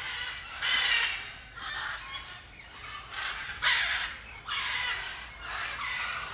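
Macaws squawking: a run of harsh, raspy calls, about one a second, the loudest a little past the middle.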